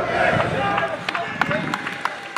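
Footballers shouting to each other during open play, followed by several sharp knocks from about a second in as players run across the pitch.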